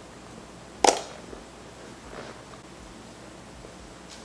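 Scissors snipping through a tied-off bundle of curly wig hair: one sharp snip about a second in, then quiet room tone.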